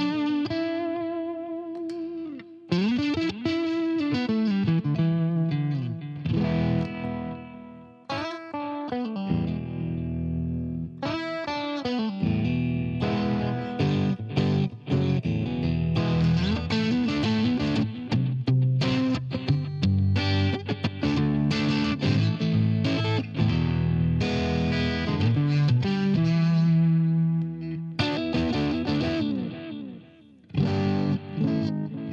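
Electric guitar played through an Axe-Fx II modelling a Friedman Dirty Shirley amp with no overdrive in front, a lightly driven tone. Ringing chords with bent notes at first, then busier picked playing from about twelve seconds in.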